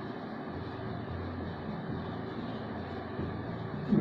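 Steady low hum with a faint even hiss of background noise, with no distinct strokes or knocks.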